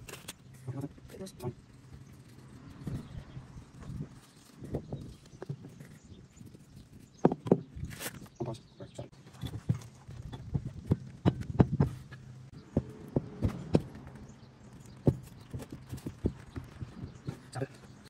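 Hands working plastic pipe fittings and green hose onto a barbed nipple. Scattered light clicks and knocks of the parts being handled and pushed together, a few sharper ones about halfway through.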